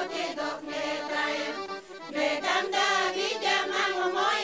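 Bulgarian folk choir of women's voices singing a traditional song together. The voices break off briefly just before halfway, then come back in.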